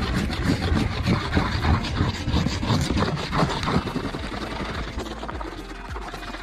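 ZŪM rub-on wax stick scrubbed rapidly back and forth across a snowboard base, a dense run of short rubbing strokes that eases off a little in the second half.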